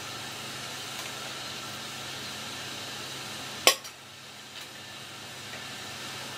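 Steady hiss of a pot of daikon simmering on the stove in soy-seasoned broth. One sharp knock about three and a half seconds in is the loudest sound.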